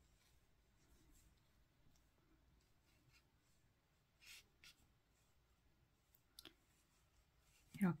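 Near silence with a few faint, brief rustles of hands handling a crocheted yarn flower and its wire stem, two of them about halfway through and a small click a couple of seconds later.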